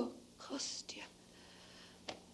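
The tail of a spoken 'Oh' at the very start, then a short breathy whisper lasting about half a second, followed by faint room tone.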